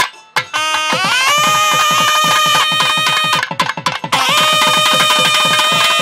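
Carnatic temple music: loud, long-held melodic notes with slight bends over quick, even drum strokes. The music drops out briefly at the start, comes back about a second in, and pauses for a moment around the middle.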